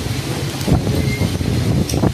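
Strong wind buffeting the microphone: a loud, steady low rumble with a couple of brief gusts.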